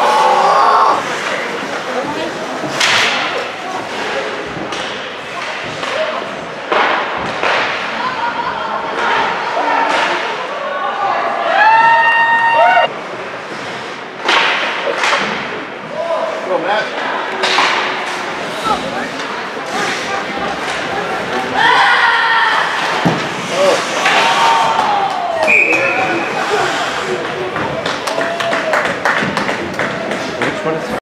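Ice hockey play on a rink: repeated sharp knocks and thuds of pucks and sticks hitting the boards, glass and ice, with players' shouts and voices in between, louder bursts of shouting about twelve and twenty-two seconds in.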